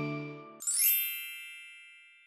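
Background music dying away, then a bright sparkly chime sound effect, a quick upward shimmer about half a second in, ringing on several high tones and fading out over about a second.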